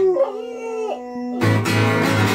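Pit bull howling with a wavering, gliding pitch over a ringing guitar note. About one and a half seconds in, loud guitar strumming comes back in.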